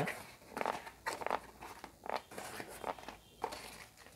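Cardboard shipping box being opened by hand, with a string of short, irregular scrapes and rustles from the cardboard flaps and the packing paper inside.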